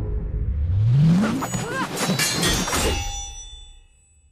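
Fight sound effects from an animated show: a rising swoosh, then a quick run of hits and metallic clangs whose ringing tones fade away near the end.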